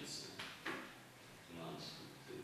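Low, murmured talk between people, with two short clicks about half a second in.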